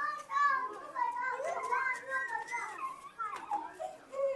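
Children's voices talking and calling out, high-pitched, running on through the whole stretch.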